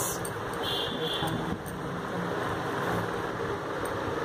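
Steady background hiss with no distinct events, with faint voices in the background.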